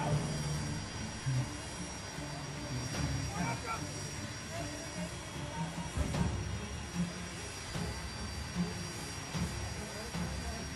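Indistinct voices of a group of men some distance off, heard over a steady low rumble and hiss.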